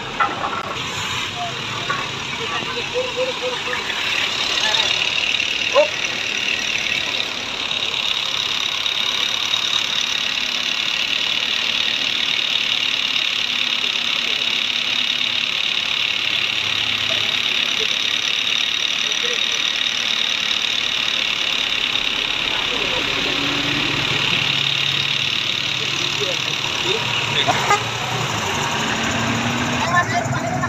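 A truck engine idling, under a steady high hiss, with a few short clicks and people talking in the background.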